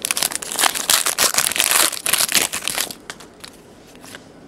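A trading-card pack wrapper crinkling and tearing as it is ripped open by hand, in a dense run of crackles that dies away about three seconds in.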